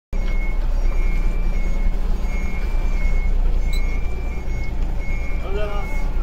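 A tractor-trailer's diesel engine runs with a steady low rumble, heard from inside the cab. The truck's reverse alarm sounds a high beep about once a second as it backs up.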